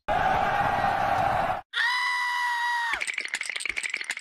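Three edited sound effects in a row: a harsh, noisy cry for about a second and a half, then a held steady tone with overtones for just over a second, then a fast rattling chatter near the end.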